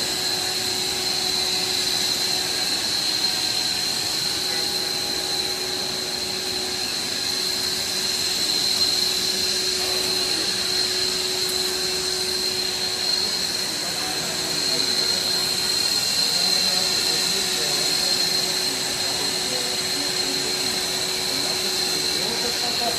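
Plastic chain-wrapping extrusion line running steadily: a continuous machine hum with a steady high whine over it.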